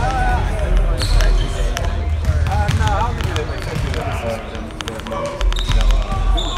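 A man speaking close to the microphones, with basketballs bouncing repeatedly in the gym behind him.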